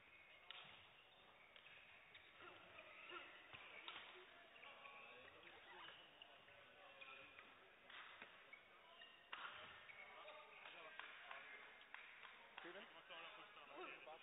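Quiet sports-hall ambience: faint, indistinct voices echoing in a large hall, with a few short sharp knocks.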